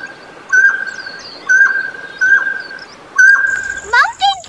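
Mountain quail calling: a loud, clear whistled note held at one pitch with a short downward drop at its end, repeated about once a second, four times. Faint high chirps of small birds sound behind it.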